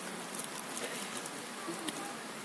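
Steady hiss with faint, scattered high-pitched ticks and chirps of night insects.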